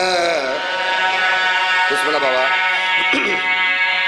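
A man's voice chanting in long, wavering held notes, the sung, lamenting style of a zakir's recitation at a majlis.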